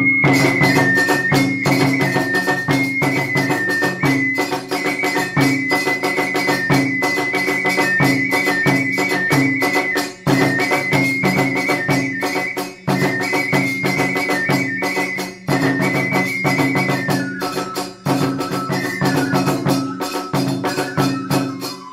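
Iwami kagura hayashi in the fast eight-beat (hachi-chōshi) style: a bamboo transverse flute (fue) plays a high melody that steps back and forth between two notes and drops lower near the end, over rapid drumming on the large and small kagura drums. The ensemble starts all at once and pauses briefly a few times between phrases.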